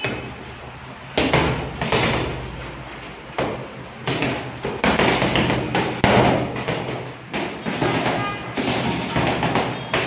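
Boxing gloves landing on a heavy punching bag in a run of short snapping punches, a thud about every half second to a second, some coming in quick pairs.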